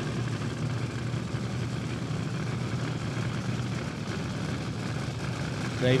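Injected nitro-burning A-fuel dragster engine idling steadily as the car rolls up toward the starting line.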